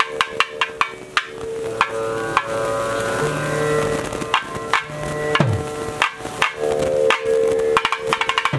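Barrel drums (thavil) struck in sharp, uneven strokes of temple percussion, over a steady held pitched tone.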